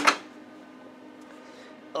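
A short sharp knock, then a faint steady hum.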